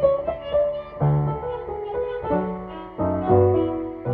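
Violin and upright piano playing a tango together, the piano striking bass notes about once a second under the melody.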